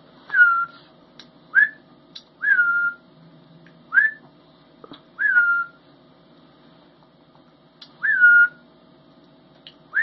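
A young hawk on the glove calling over and over as it is hand-fed meat: seven short, high whistled calls in ten seconds, each a quick upward sweep, most then held as a slightly falling note.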